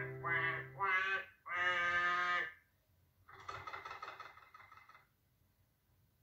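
Cartoon-style quacking from a puppet duck: two short quacks and then a longer one in the first two and a half seconds, followed by a rougher, noisier call about three seconds in. A music cue with held notes ends about a second in.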